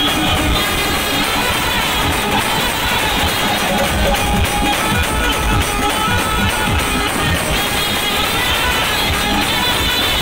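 Indian street brass band playing a tune: trumpets and saxophone over a steady drum beat, with the saxophone played into a hand-held microphone.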